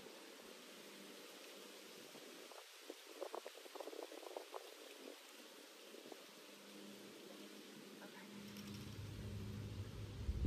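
Quiet background hiss with a short run of light rustles and clicks a few seconds in, then a low rumble that builds near the end.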